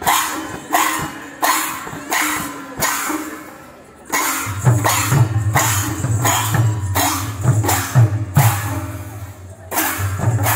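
Kirtan ensemble in full play: large brass hand cymbals clashing in a steady beat, about two clashes a second, each ringing out. About four seconds in, barrel drums come in with deep strokes and the music grows louder.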